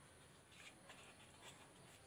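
Near silence, with a few faint scratchy rustles of colour paper as the paper flower is handled.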